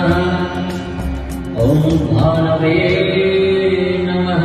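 Recorded devotional music with a chanted mantra: a voice holding long, drawn-out notes over a steady accompaniment, a new phrase beginning a little past the middle.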